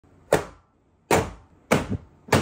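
Three sharp knocks of hard plastic ("bam bam bam"), well under a second apart: the base and drying modules of a Chitu Systems FilaPartner E1 filament dryer being set down and stacked onto each other on a wooden desk.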